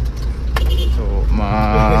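A man talking over the steady low rumble of a minibus engine running.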